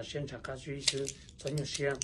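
A man talking in Hmong, in short phrases, with a few light clicks and crinkles from a plastic bag handled in his hand.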